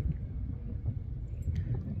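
Low, uneven background rumble.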